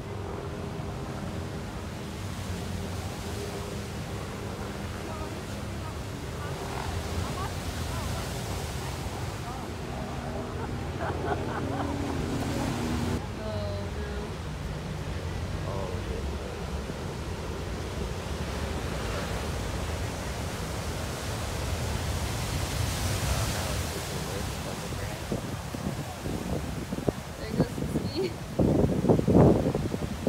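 Heavy big-wave surf breaking and washing over a boulder beach in a steady, dense roar of white water, with wind buffeting the phone's microphone. Faint voices of onlookers come and go.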